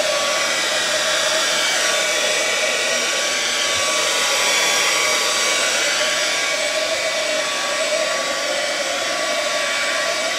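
Hand-held hair dryer blowing steadily over freshly sprayed paint to speed its drying, swelling a little midway.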